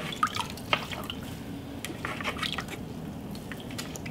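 Water dripping and splashing onto a potter's wheel head around the base of a freshly thrown bowl, in scattered small drips over a low steady hum.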